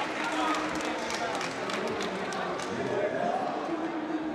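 Indistinct voices of people at ringside and in the crowd, talking and calling out, with a few sharp clicks or claps in the first couple of seconds.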